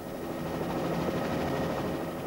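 Steady rushing drone of a racing trimaran under sail in choppy sea: wind and spray with a faint engine-like hum, easing slightly near the end.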